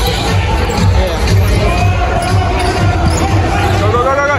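A basketball being dribbled on a hardwood court, heard as repeated low thumps. Underneath are crowd voices and music from the arena's PA.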